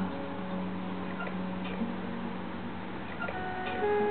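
Acoustic guitar in a quiet passage of a folk song: a low note rings on and fades, with a few faint clicks, and soft picked notes come in near the end.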